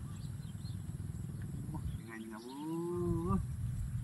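A low rumble in the background, then about two seconds in a single drawn-out call lasting just over a second, gliding up and holding before it breaks off.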